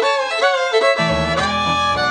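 Fiddle playing a quick melody over piano accompaniment; the low accompaniment drops out at first and comes back in about a second in.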